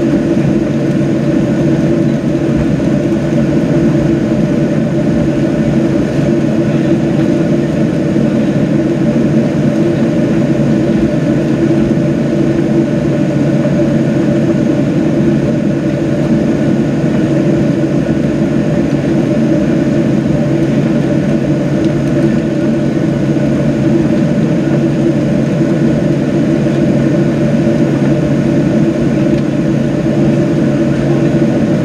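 Steady cabin hum of a Boeing 737-700 taxiing, its CFM56-7B engines at idle power, with a few fixed low tones over an even rush of air.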